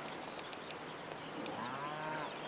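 Distant cow mooing: one long, low call that swells about a second and a half in.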